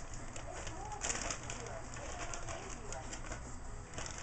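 A bird cooing in the background, repeated short calls over a low steady hum.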